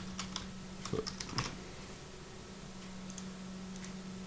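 Typing on a computer keyboard: a quick run of key clicks in the first second and a half, then a few faint clicks around three seconds in. A steady low hum runs underneath.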